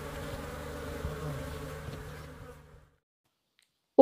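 A colony of honey bees buzzing in a steady drone, fading out near three seconds in and then cutting to dead silence.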